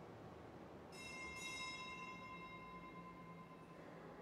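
A small bell struck twice in quick succession about a second in, its clear tones ringing on and fading away over about two and a half seconds, faint in the large, quiet church.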